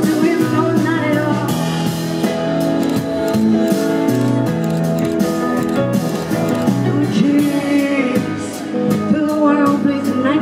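Live rock band playing through a PA, with held bass notes under a steady drumbeat in a mostly instrumental stretch. A woman's sung vocal comes in near the end.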